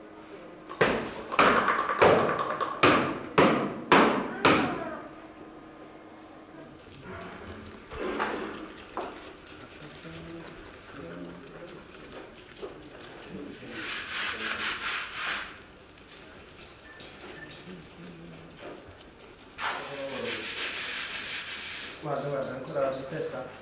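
Hand tools working a wet mosaic panel: a run of about seven quick, loud scraping strokes in the first five seconds, then quieter handling with a stretch of scratchy scrubbing in the middle and again near the end, where a stiff-bristled brush scrubs the wet stone tesserae.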